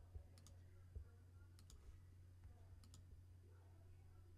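Near silence with a low steady hum and a few faint computer mouse clicks, two quick pairs and then a single click.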